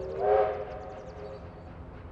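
A train whistle sounds once, a blast of several tones about a second and a half long that rises briefly in pitch as it starts.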